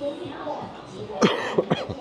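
A person coughing three times in quick succession, the first cough the loudest, over people talking in the background.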